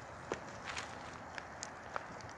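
Kick bike ridden on rough asphalt: the rider's shoe scuffs and strikes the road as he kicks along, over a steady rolling hiss. There are a few sharp clicks, the loudest about a third of a second in and again near the end.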